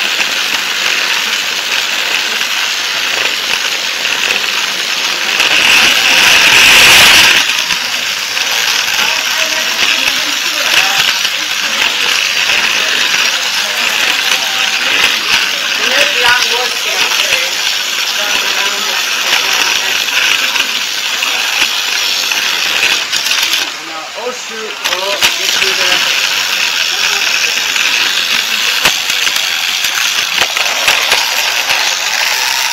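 Motorized plastic toy train running along plastic track, heard from a camera riding on the train: a steady, dense rattling clatter of motor and wheels, swelling loudest about six to seven seconds in.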